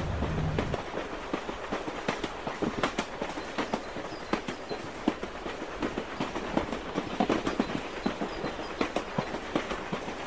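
Footsteps of several people walking along a garden path, a run of irregular taps and scuffs. A low hum cuts out less than a second in.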